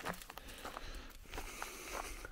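Faint footsteps crackling and rustling on dry leaf litter, with scattered light clicks.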